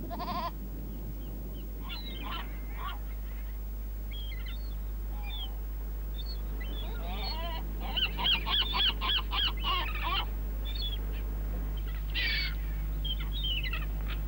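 A feral goat bleats once, briefly, at the very start. Then birds call in high, arching calls, scattered at first, with a rapid run of about five calls a second from about eight to ten seconds in and a few more near the end.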